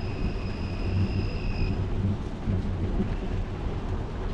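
Steady low rumble of wind and movement on an action camera's microphone over outdoor city ambience. A faint steady high-pitched whine stops a little under two seconds in.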